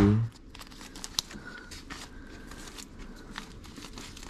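Vinyl LPs in plastic sleeves rustling and crinkling as a hand flips through them in a crate, with a few light clicks.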